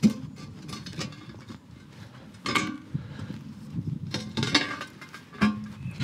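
Screwdrivers clinking in the keyholes of a metal manhole cover as it is levered up and shifted aside. A sharp knock at the start, then several short metallic clinks and scrapes.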